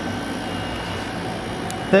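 Steady background hum with a few faint constant tones, like room or ventilation noise; a man's voice starts right at the end.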